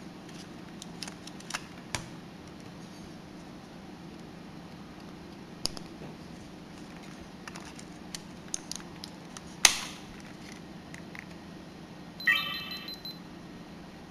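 Handling of a Canon PowerShot S100 compact camera: scattered small plastic clicks as the battery and its door are fitted, with one sharp snap just under 10 seconds in. About 12 seconds in, a short high electronic tone lasting under a second as the camera powers up, which ends in a lens error caused by a wrongly seated ribbon cable to the lens barrel.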